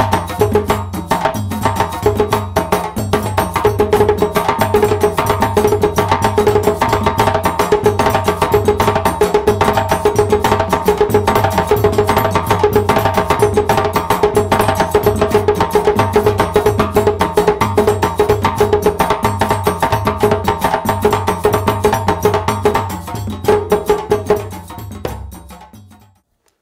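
Djembe played by hand in a fast solo of dense, rapid strokes, which thin out to a few last strokes and stop just before the end.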